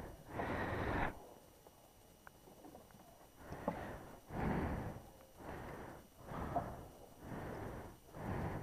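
Breathing close to a helmet-mounted microphone: one breath, a pause of about two seconds, then a run of breaths about a second apart, with a couple of faint clicks.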